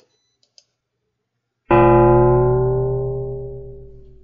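Synthesized water gong: a finite-difference model of a linear metal plate, struck once a little under two seconds in and ringing with many partials that die away slowly. The partial pitches slide as the simulated plate is lowered into and lifted out of water.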